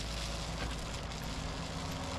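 Compact track loader's engine running steadily.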